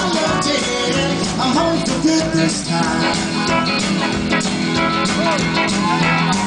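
Rockabilly band playing live, with upright double bass, drum kit and guitars. The song runs on at a steady beat.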